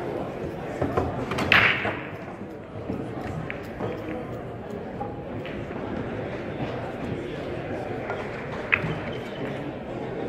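Billiard balls knocking together about a second and a half in as they are gathered up, then near the end the break shot: one sharp crack of the cue ball into the racked balls, over the murmur of a crowded hall.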